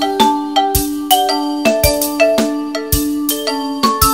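A percussion quartet playing tuned mallet instruments: a quick, interlocking stream of struck pitched notes, each ringing briefly, with a few sharp unpitched hits mixed in.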